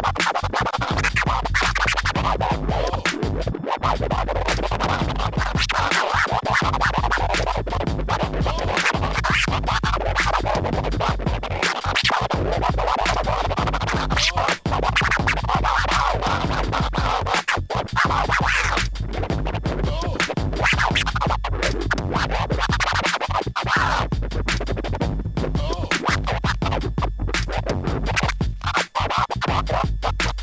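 Vinyl record scratching on a turntable, the record pushed back and forth by hand and chopped into fast rhythmic cuts with the mixer's crossfader, over a hip hop beat with a steady bass. The sound drops out briefly twice, once about halfway through and once near the end.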